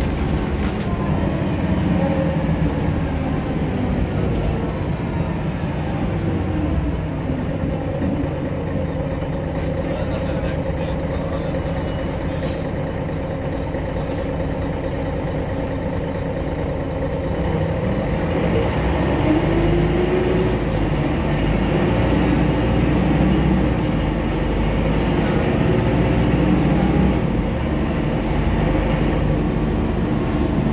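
Cabin sound of a MAN NG313 articulated city bus on the move: a steady engine drone with road noise. The engine pitch falls in the first few seconds as the bus slows, holds steadier and a little quieter through the middle, then rises again past the halfway mark as it pulls away and gathers speed.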